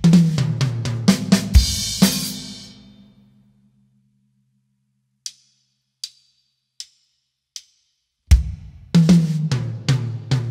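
A drum kit plays a short fill down the toms, stepping down in pitch, and lands on a crash cymbal and bass drum that ring out and fade over a second or so. After a pause, four evenly spaced clicks count in, and the same fill starts again more slowly near the end.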